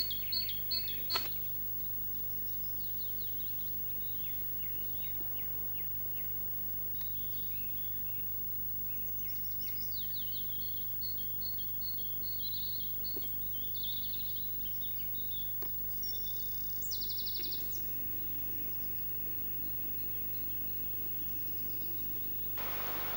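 Small woodland songbirds singing: quick series of high chirps and descending notes, busiest in the second half, with a short buzzy trill a few seconds before the end, over a steady low background hum.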